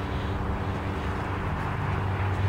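A steady, low mechanical hum, like a motor running, under an even outdoor hiss.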